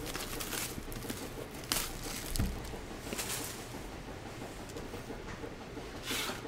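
Quiet handling of a sealed cardboard trading-card box: a few light knocks and a brief rustle, about two, two and a half, and three and a half seconds in, over a faint steady hiss.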